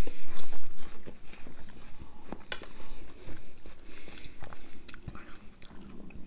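Close-up chewing of juicy watermelon: wet, irregular mouth clicks and smacks, loudest in the first second.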